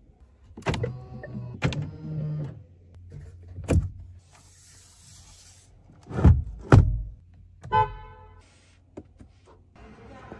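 A series of clicks and knocks as a car's interior fittings are handled: the sun visor's vanity-mirror cover and the steering wheel. The loudest are two knocks about half a second apart past the middle.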